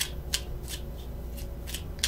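Tarot cards being shuffled by hand: a handful of short, crisp card snaps, spaced unevenly.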